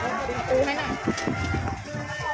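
Speech over background music; no other distinct sound stands out.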